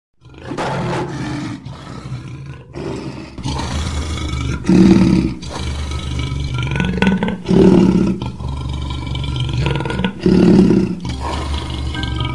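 A lion growling and roaring, with three loud roars about three seconds apart, the first about five seconds in.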